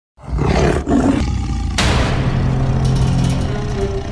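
A recorded tiger roar used as a logo sound effect, layered over intro music. A second loud surge comes a little under two seconds in.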